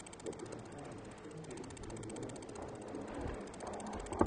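Faint room noise in a council chamber: low, indistinct murmuring and movement with a faint steady electrical hum.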